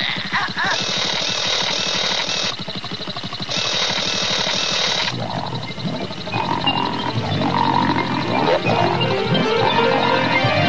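Two harsh, buzzing cartoon sound effects, each about a second and a half long, followed from about halfway through by cartoon music with held keyboard notes.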